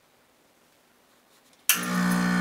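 Quiet room tone, then near the end an espresso machine's pump switches on with a sudden, steady buzz.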